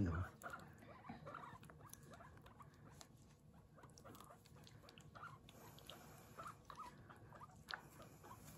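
Long-haired guinea pig making short, faint squeaks ("puipui") every second or so while being bathed, with light wet patter from hands working shampoo into its fur.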